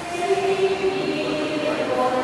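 A choir singing a hymn, holding long, steady notes.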